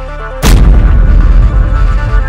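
Intro music with a repeating synth arpeggio, struck about half a second in by a single heavy boom-and-crash sound effect that leaves a long low tail under the music.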